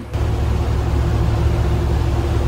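A motor yacht under way: a steady low engine rumble with a constant hum, and an even hiss of wind and water over it.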